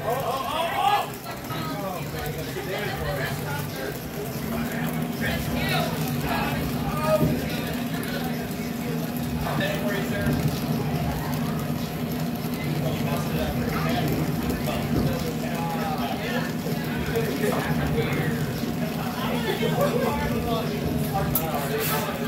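Brazing torch flame hissing steadily while copper refrigerant tubing is brazed. A steady low hum runs underneath, and faint voices come and go.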